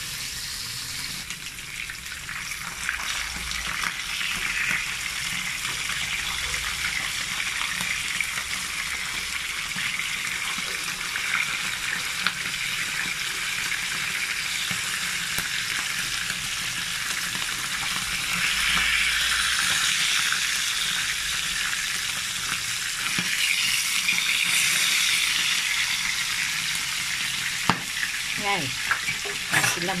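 Round scad (galunggong) frying in hot oil in a pan: a steady sizzle that swells louder in two spells past the middle, with a few light knocks near the end.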